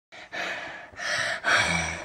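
A person's breathy gasps, three in quick succession.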